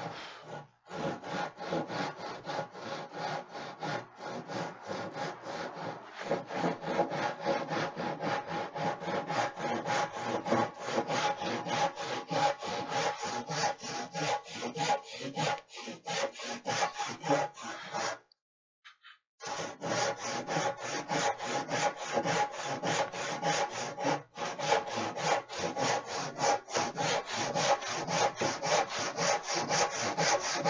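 Handsaw ripping a long board lengthwise, in steady, even back-and-forth strokes. The sawing stops for about a second around eighteen seconds in, then carries on at the same pace.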